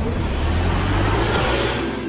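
Logo-reveal sound effect: a swelling whoosh over a deep rumble, building to a bright hiss near the end as the logo forms.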